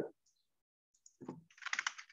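Typing on a computer keyboard: a few keystrokes about a second in, then a quick run of them near the end.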